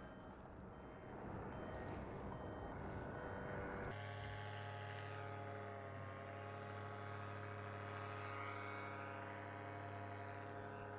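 An electronic flight instrument beeping steadily, a short high tone nearly twice a second, over rushing wind noise. About four seconds in, the wind and beeps give way to a steady low hum made of several tones.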